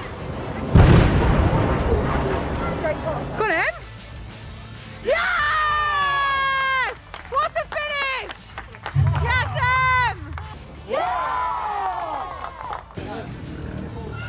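Long whooping, sliding cheers and shouts celebrating a goal, over background music. A loud blast of noise comes about a second in.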